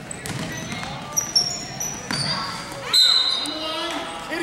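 Youth basketball game on a hardwood gym floor: the ball bouncing, sneakers squeaking in short high chirps, and players and spectators shouting, all echoing in the hall.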